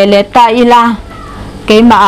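A woman speaking with long, drawn-out vowels, pausing briefly near the middle.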